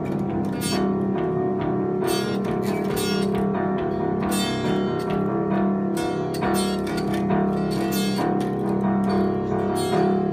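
A child strumming a small acoustic guitar in uneven, irregular strokes, the open strings ringing on between strums.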